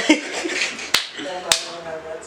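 Three sharp snaps or clicks, spaced about a second and then half a second apart, amid voices.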